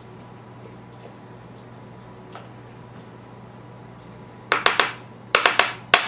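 Faint steady hum, then about four and a half seconds in three short, loud clusters of scraping and clacking as a utensil works against a metal baking pan.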